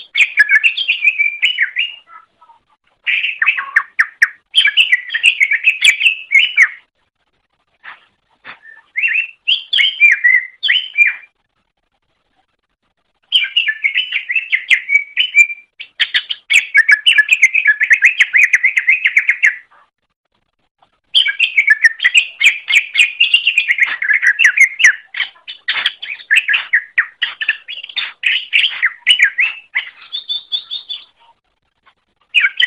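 A green leafbird (cucak ijo) singing loud, fast, varied chattering phrases, each a few seconds long, broken by short pauses.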